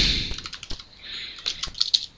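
Computer keyboard typing: a few irregular keystroke clicks, with a soft hiss near the start and again about a second in.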